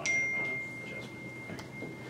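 A single high ding with a sharp start, ringing on as one steady tone for about two seconds.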